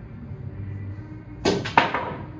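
A pool shot on a home pool table: the cue tip strikes the cue ball, then about a third of a second later comes a sharper, louder click of balls colliding.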